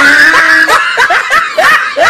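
Laughter in quick, repeated short bursts.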